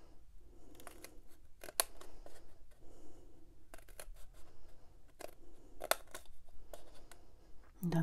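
Small scissors cutting slits into white cardstock along drawn lines: a series of sharp snips about a second apart, with soft paper rustling between them.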